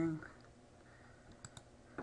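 A few faint, short computer clicks, a pair about one and a half seconds in and one more at the end, over a quiet room.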